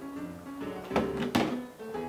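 Two small glass shot glasses set down on a table, two knocks about a third of a second apart about a second in, over background music.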